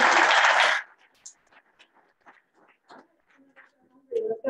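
Audience applauding. The dense clapping stops sharply about a second in, and a few scattered claps trail off after it.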